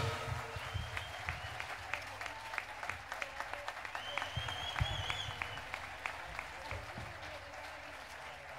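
Audience applauding, many hands clapping and slowly dying away. A couple of high-pitched calls from the crowd rise above the clapping.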